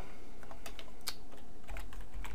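Computer keyboard being typed on: several separate keystroke clicks at an irregular, unhurried pace.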